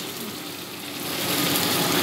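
Steady hiss of food frying in hot oil over a gas stove burner, with no stirring or utensil clatter.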